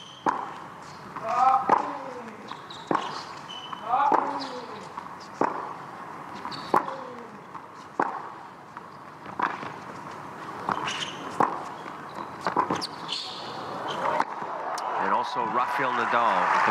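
Tennis rally on a hard court: racket strikes and ball bounces come about every second and a half, a dozen or so in all, and a short grunt follows several of the shots. Crowd noise swells near the end as the point finishes.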